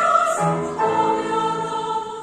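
A choir singing sustained chords with grand piano accompaniment, moving to a new chord a little under a second in.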